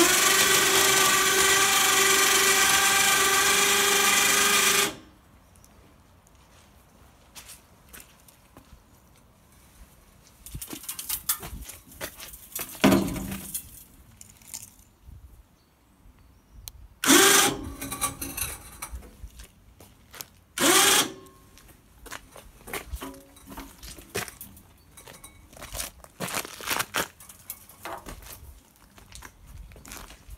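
Remote-controlled electric winch on a hitch-mounted snowplow frame running steadily for about five seconds to move the plow blade, then stopping abruptly. Several shorter, noisier bursts follow later.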